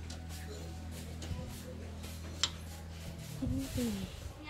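A metal ladle stirring sugar into hot coconut water in an aluminium pot, with one sharp clink against the pot a little past halfway. Under it runs a steady low hum that stops near the end.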